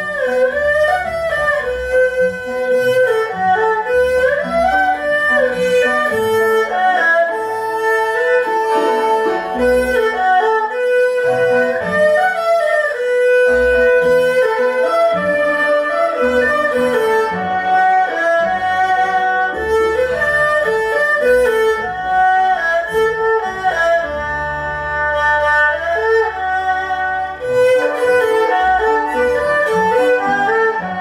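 Erhu playing a lively, quick Nanbeiguan folk melody, the bowed notes sliding up and down between pitches, over a low accompaniment.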